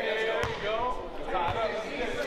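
A basketball bouncing on a hardwood gym floor: two thuds about a second apart, under people's voices.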